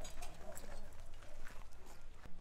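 Irregular knocks and clinks of rubble and broken debris shifting under footsteps, over a steady low hum.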